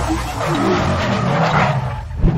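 Sound effect of a car tyre squealing in a burnout, over a low engine rumble. The squeal builds from about half a second in and is loudest near the end.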